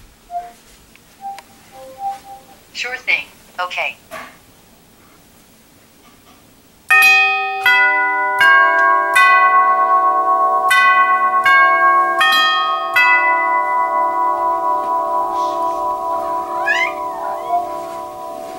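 Tubular doorbell chime, its metal tubes struck about nine times at several pitches, playing a tune at roughly 0.7 s intervals starting about seven seconds in. The tubes then keep ringing and slowly fade.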